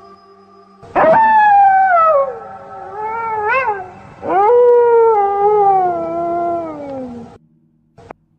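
Three drawn-out wailing animal cries, the first and last long and sliding down in pitch, the middle one short and wavering, coming in over a faint steady music drone. They are loud and cut off suddenly near the end.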